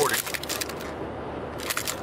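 Handling noise from a camera being flipped around in the hand inside a moving car: rubbing and a few clicks near the start and again near the end, over the steady road noise of the cabin.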